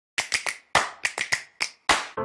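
Clapping percussion: nine sharp clap hits in a quick, uneven rhythm, each dying away fast.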